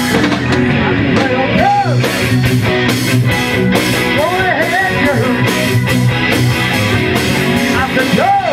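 Live rock band playing with electric guitars, bass, drums and keyboard. A harmonica cupped to the vocal microphone plays bending notes over it several times.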